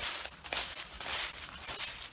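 Footsteps crunching through a thick layer of dry fallen leaves, several steps in a row.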